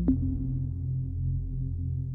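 Electronic 90s dance music from a DJ mix: a held low synth chord with a sharp hit just at the start.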